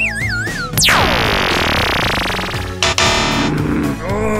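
Background music with synthesized cartoon sound effects: a warbling whistle that falls in pitch, then about a second in a steep downward sweep with a hissing wash lasting nearly two seconds, and a short burst near the end.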